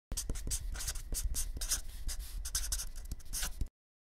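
Writing on a surface: quick, irregular scratchy strokes of a writing tool, cutting off abruptly shortly before the end.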